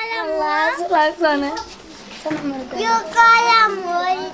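A girl speaking.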